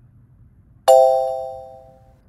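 A single bright chime sound effect about a second in, ringing and fading away over about a second. It cues the reveal of the quiz answer's reading.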